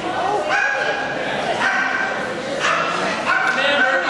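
A dog whining in a string of drawn-out, high-pitched cries, each held at a steady pitch for under a second, one after another. The sound echoes in a large indoor arena.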